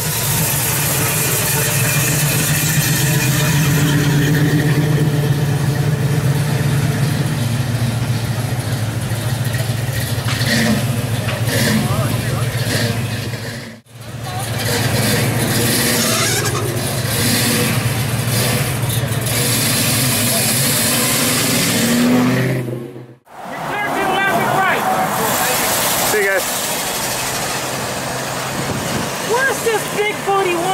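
Classic car and pickup engines running as vehicles drive past, in edited clips: first a steady low engine rumble, then another car engine that rises in revs near the end of its clip, then lighter street traffic with voices.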